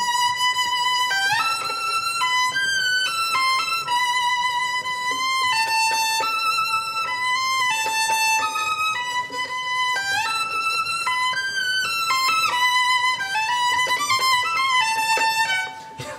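Solo violin playing a slow, connected melodic phrase high on the instrument, with vibrato, the notes changing about once a second. It is bowed with the bow turned around, so that the heavy and light ends of the bow fall the other way round from normal.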